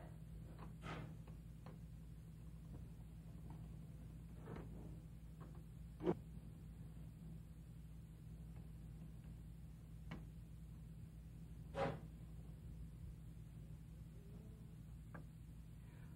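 Quiet room tone with a steady low hum, broken by a few scattered soft clicks and knocks from hands working a hand-cranked pasta machine and a sheet of white chocolate on a wooden board.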